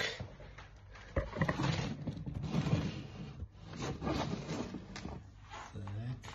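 Rustling and scraping as a handheld phone is carried and moved about, with a sharp knock about a second in.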